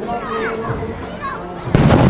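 Spectators chattering, children's voices among them, then a loud firework boom breaks in near the end and rings on.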